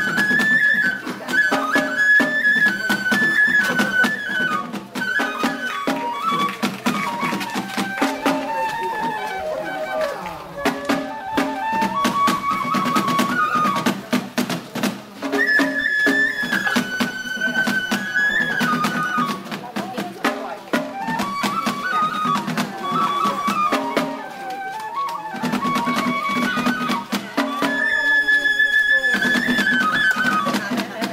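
Ise Daikagura festival music: a high Japanese bamboo flute playing a melody over continual drum and cymbal strikes.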